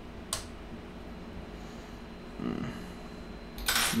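A single sharp click of a small tool against the open laptop's parts about a third of a second in, then faint handling sounds, and a short rustle near the end.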